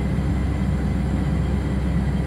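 Shrimp cutter's diesel engine running steadily, a low, even drone heard inside the wheelhouse.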